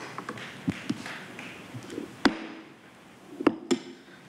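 A few sharp clicks over low room noise in a hard-walled hall: one loud click a little past two seconds in, then two more close together about three and a half seconds in, with smaller taps between.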